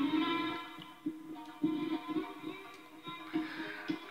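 Instrumental background music: held notes with separate notes picked out over them, dropping softer about a second in.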